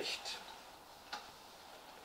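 A quiet pause in a man's speech: faint room tone with a short faint click about a second in.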